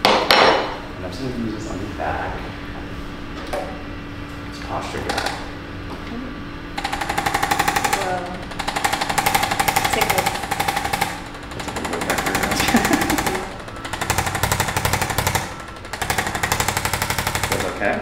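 Electric percussive spine massager hammering rapidly against the patient's back, starting about seven seconds in. It runs in several stretches with short breaks between them.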